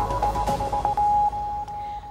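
Tail of an electronic news jingle: a quick repeated high note settles into one held tone about a second in, which fades toward the end.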